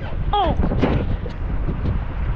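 Wind buffeting the action camera's microphone in rough sea conditions, a dense low rumble. There is a short rising-and-falling call about half a second in and a sharp knock just before the one-second mark, as a gloved hand handles the camera.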